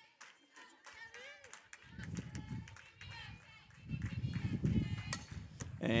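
Distant voices calling out across an outdoor softball field, with wind rumbling on the microphone from about two seconds in. Near the end, the bat strikes the softball once sharply as the batter hits a chopper.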